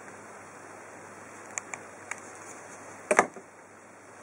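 Quiet room hiss with a few faint clicks, then a single short knock about three seconds in as a Nokia 1100 mobile phone is set down on a wooden table.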